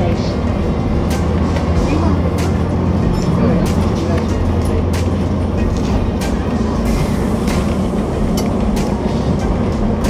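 Inside a moving double-decker bus: a steady engine and road drone, with frequent short rattles and clicks from the bodywork and fittings.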